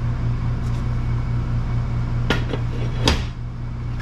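Cast-iron brake rotor being set down on a steel workbench and suspension arm: two sharp metal clanks, about two seconds in and again about three seconds in, the second louder, over a steady low hum.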